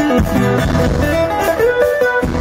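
Live band playing: an amplified acoustic guitar carrying sustained, sliding lead notes over a drum kit and bass guitar.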